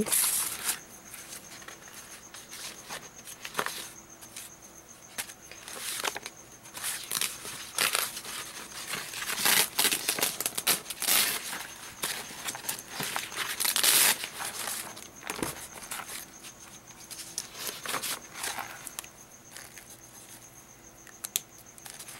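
Sheets of printed paper being handled and shuffled: irregular rustles, slides and crinkles as prints are picked up, flipped and laid down, loudest and busiest between about nine and fourteen seconds in.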